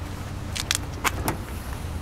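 Sharp latch clicks from a 2010 Mazda 6 sedan as its trunk lid is unlatched and lifted open: a quick cluster of clicks about half a second in, then two more about a second in.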